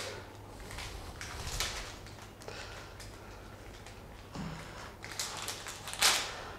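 Faint rustling and crinkling of a sterile urinary catheter's plastic package being peeled open and handled, in scattered soft strokes.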